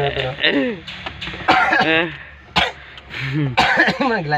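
A person's voice making sounds without clear words, with a cough about a second and a half in and a couple of sharp clicks shortly after.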